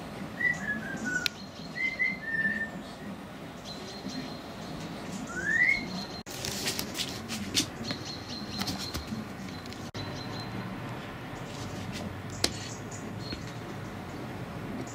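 Outdoor bird calls at dawn: a few short whistled notes dropping in pitch in the first couple of seconds, then one short rising note about five seconds in. A few clicks and knocks around the middle and a sharp click near the end.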